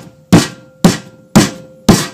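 A fist punching down risen yeast dough on a wooden cutting board: evenly spaced thumps about two a second.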